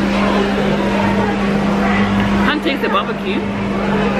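Indistinct background chatter of several voices over a steady low hum. About two and a half seconds in, the hum and chatter dip for about a second, leaving a few clearer voice sounds, then return.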